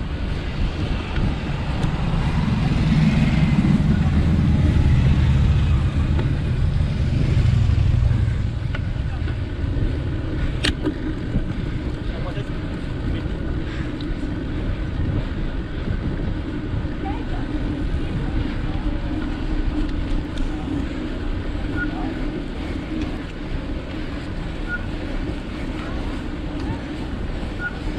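Wind and road rumble on a bike-mounted action camera climbing slowly. A car passes, swelling to a louder low rumble between about two and eight seconds in and then fading. There is a single sharp click a little after ten seconds.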